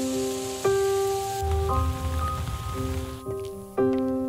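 A steady hiss of water spray from a sports-field sprinkler that falls away a little after three seconds in. It plays under gentle music with held chords that change about once a second.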